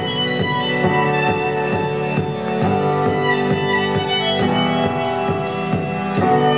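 Live instrumental passage on piano and violin: struck keyboard chords under held, bowed violin notes.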